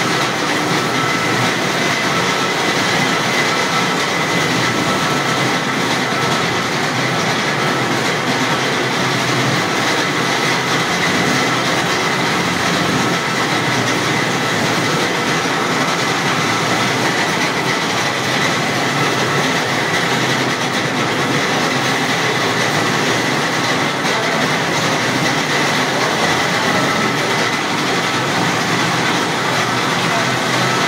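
Borewell service truck's machinery running steadily and loudly, with a faint high whine over the noise.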